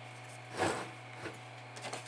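Steady low electrical hum, with a brief rubbing noise about half a second in.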